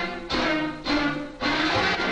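Sampled melodic stabs played back through FL Studio's Fruity Slicer, each slice stretched out and pitched down eight semitones. Three sustained chord stabs sound in turn, a new one a little over half a second after the last, each fading before the next.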